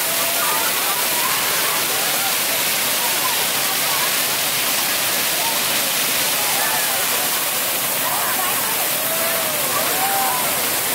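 Ground-level fountain jets spraying up and splashing onto wet paving, a steady hiss of water, with the voices of a crowd and children over it.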